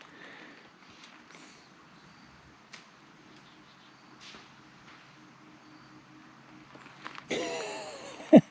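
Faint, quiet outdoor ambience: a soft even hiss with two small ticks, about three and four seconds in. A voice starts near the end.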